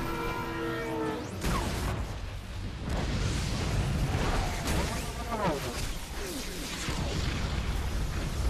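Action-film soundtrack of music and sound effects for a motorcycle-and-train chase: a held chord of steady tones cuts off about a second in, then rushing noise with sliding, engine-like pitch sweeps, twice.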